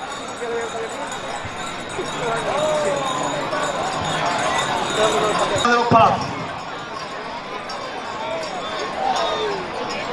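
Indistinct chatter of a crowd of spectators, many voices overlapping, with a briefly louder voice about six seconds in.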